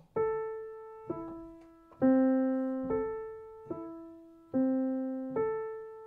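Grand piano played pianissimo in a slow broken-chord pattern, a new note or chord about every second, each left to ring and fade. It is an exercise in playing every note softly and at the same intensity.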